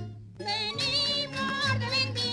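Spanish folk dance song: the music dips for a moment, then a singer's voice comes in about half a second in with a wavering vibrato over the instrumental accompaniment.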